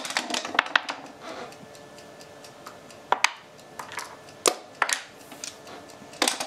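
Backgammon checkers and dice clicking and knocking on the board as a move is played and the dice are thrown: separate sharp clicks, several in the first second, then more about three and four and a half seconds in.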